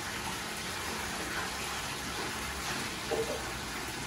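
Water running steadily into a bathtub from the tap.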